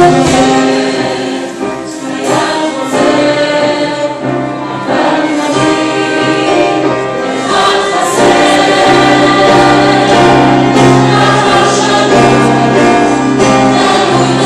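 Mixed choir singing with a live instrumental ensemble accompanying. The sound thins out briefly about two seconds in and grows fuller again at about eight seconds.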